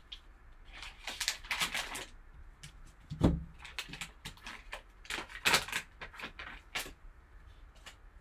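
Gloved hands handling a foil card-pack wrapper and hard plastic card cases: the wrapper crinkles in bursts about a second in and again around five seconds, among light plastic clicks and taps, with a dull thump about three seconds in as something is set down on the table.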